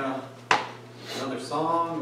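A man's voice speaking, broken about half a second in by a single sharp knock that is the loudest sound.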